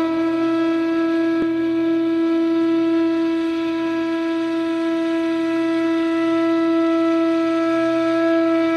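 Indian flute holding one long, steady note.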